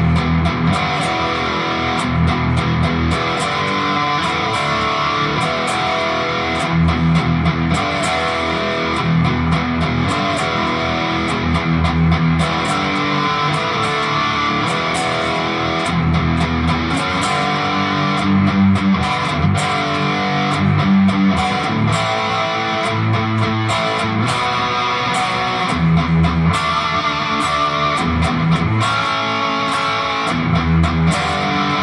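Tiger-striped ESP electric guitar played alone through a distorted tone, running through a hard-rock rhythm part of power chords and arpeggiated chords with open strings left ringing, in a steady rhythmic pulse.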